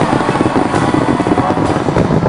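Fireworks crackling in a dense, rapid run of small bangs with no pause between them.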